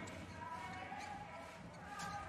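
Indoor volleyball play: a faint ball hit about a second in, over the low hum of arena noise.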